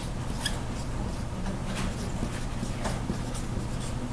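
Dry-erase marker writing on a whiteboard: a few short, scattered scratches and squeaks over a steady low room hum.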